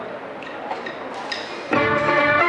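Hall and audience noise with a few light clicks, then a live band comes in loudly near the end with sustained chords, opening the song's introduction.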